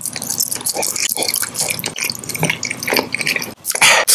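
Close-miked wet mouth sounds of a gumball being bitten and chewed: many small clicks and sticky smacks. A brief loud burst of noise comes near the end.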